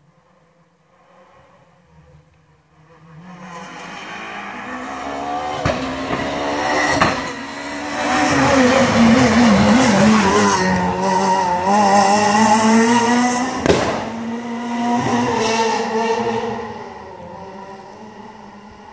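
Renault Clio R3 rally car's four-cylinder engine approaching at racing speed, its revs rising and falling as it passes, then moving away. Three sharp gunshot-like bangs cut through: two as it approaches and one as it goes by.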